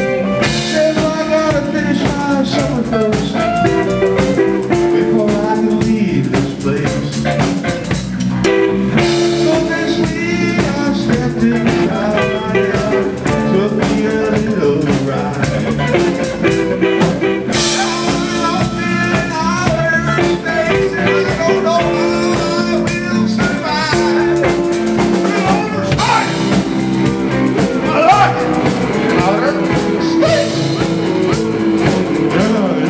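A live band playing a bluesy tune: drum kit, electric guitars and bass guitar, with many bending guitar notes.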